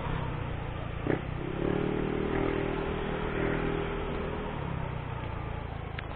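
Motorcycle engine running steadily while riding at about 50–60 km/h, with wind rushing over the onboard camera's microphone. A single click comes about a second in, and a faint higher steady tone joins from about one and a half seconds in until past the fourth second.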